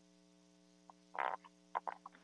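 Steady electrical mains hum on the audio-conference line. A short croaky sound comes about a second in, and two briefer ones near the end.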